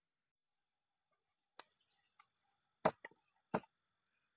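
Four irregular sharp knocks of food being prepared on a wooden stump, the loudest near the end, over insects singing two steady high tones.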